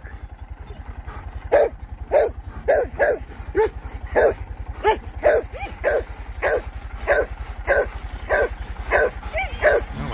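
A dog barking over and over, about two to three barks a second, starting about a second and a half in, over a small motorcycle engine running steadily.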